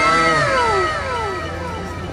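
Several voices together giving one long, falling "wooow" of amazement, loud at first and fading out over about a second and a half.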